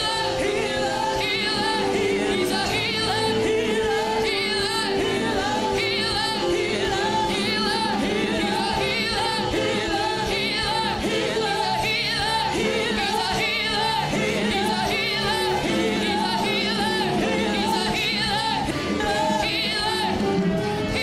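Live church worship music with singing, running continuously.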